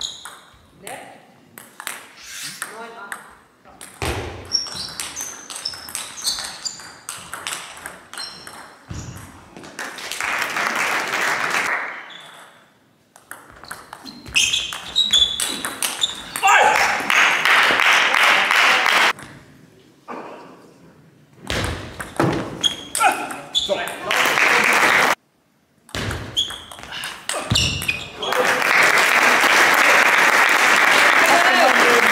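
Table tennis rallies: the ball clicks in quick runs off the bats and table. Between points the audience applauds in bursts, about ten seconds in, again around sixteen seconds, and from near the end.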